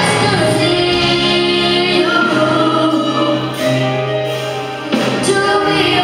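Children singing a gospel song together into microphones, in long held notes, with a short breath and a new phrase starting near the end.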